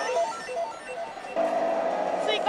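Initial D pachislot machine playing an electronic jingle: a quick run of short stepped beeps, then a held tone from about one and a half seconds in.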